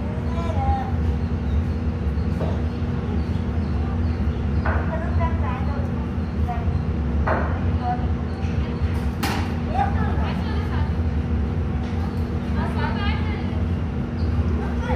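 A steady low hum under faint distant voices, with a sharp click about nine seconds in and a few short high chirps near the end.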